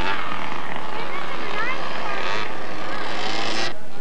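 Small two-stroke gas engines of quarter-scale radio-controlled race cars buzzing steadily, with faint voices mixed in. The sound cuts off abruptly near the end.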